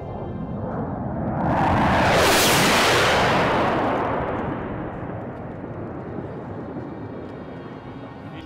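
Fairchild Republic A-10 Thunderbolt II making a low pass, the rushing noise of its twin turbofan engines swelling to a peak after about two seconds and then fading as it goes by, with music underneath.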